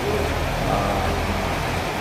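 A steady low hum with a hiss of background noise over it.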